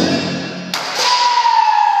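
Lion dance percussion: cymbals and drum crashing, then sharp strikes about three quarters of a second and one second in leave a single ringing tone that slowly sinks in pitch.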